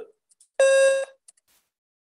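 Emulated PC-speaker beep from a DOS program in DOSBox: one steady electronic tone about half a second long, sounding as the program pops up an 'Are input data O.K.?' confirmation prompt.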